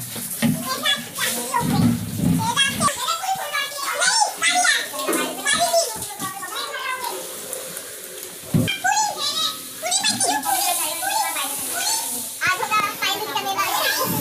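Children's voices chattering and playing, several voices overlapping, with a few knocks of things being handled.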